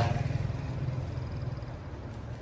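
Mazda 2's 1.5-litre SkyActiv petrol engine idling steadily: a low, even hum with a faint high whine above it.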